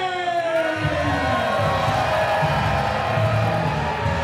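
A man singing into a microphone holds a note that slides down in pitch. About a second in, bass-heavy music comes in and carries on.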